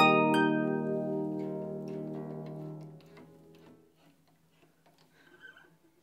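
Lever harp: a last note plucked a fraction of a second in, then the strings ring on and die away over about three seconds into near silence.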